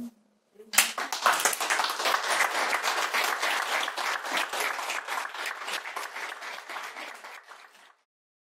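An audience applauding, a dense patter of many hands clapping that starts about a second in, holds, then thins out and dies away near the end.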